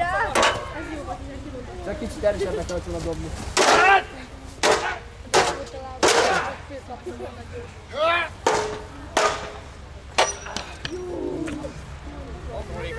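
Hand weapons striking shields and each other in mock medieval combat: about ten sharp, irregular blows, with some voices between them.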